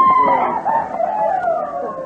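Several voices overlapping on an old, noisy 1950s recording, with one long drawn-out high exclamation near the start and a falling voice toward the end.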